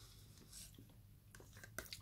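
Near silence: room tone, with a few faint clicks near the end as a plastic yogurt cup and metal spoon are handled.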